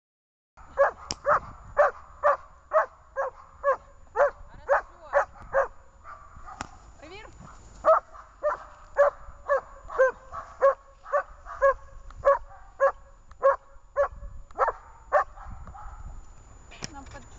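German Shepherd barking repeatedly in the bark-and-hold (облайка) exercise of protection training, about two barks a second. The barks pause for a couple of seconds around six to eight seconds in, then resume at the same pace.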